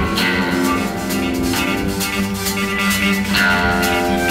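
A live blues-rock band playing, with guitars over bass and drums and the drums keeping a steady beat.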